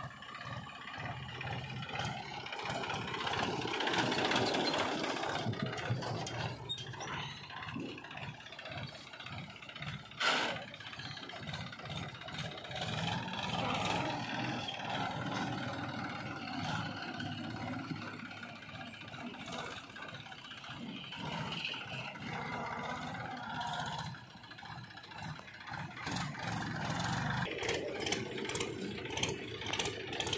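Diesel farm tractor engines running under load while pulling trailers over a dirt track, the engine note rising and falling as the tractors drive. A sharp knock about ten seconds in.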